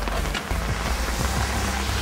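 Rain falling steadily, with a heavy low rumble of wind buffeting the camera microphone.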